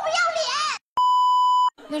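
A woman's high-pitched shouted line from a film clip, then, about a second in, a single steady electronic bleep tone lasting under a second that starts and stops abruptly.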